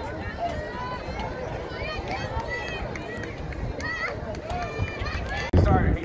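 Overlapping chatter of many people talking at once, none of it clear. Near the end comes a sudden loud, low rumble lasting about half a second.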